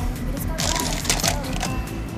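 Ice cubes dropped into a glass blender jar, several short clinks over background music.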